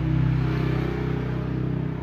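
A steady low-pitched hum with several even tones, holding level throughout.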